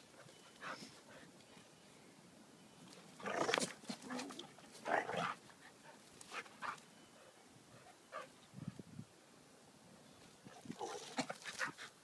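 Two dogs rough-playing: short dog noises and scuffles come in separate bursts every second or two, the loudest around three and a half and five seconds in, with a lower-pitched one near nine seconds.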